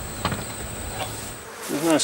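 Outdoor background noise with a thin, steady high-pitched insect whine that stops about a second and a half in. A man's voice starts near the end.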